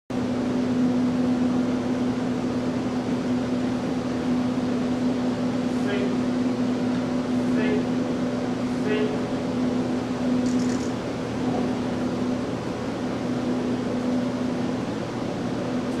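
A steady mechanical hum with one strong constant low tone, like a ventilation fan or heater running, with a few brief faint sounds over it.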